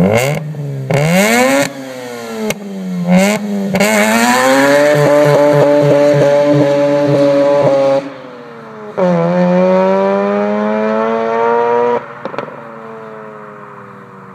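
Mazda RX-8's two-rotor Wankel rotary engine revving in short blips with a few sharp cracks, then launching and accelerating hard, its pitch rising through one gear, dropping at a shift about eight seconds in and rising again through the next. It lets off suddenly near the end with one more crack and fades as the car moves away.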